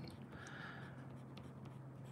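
Faint scratching of a coloured pencil shading on paper, over a steady low hum.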